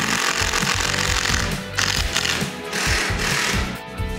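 Power drill running in two bursts, the first about a second and a half long and the second about a second, driving screws to fasten a wooden cleat to the wall. Background music plays underneath.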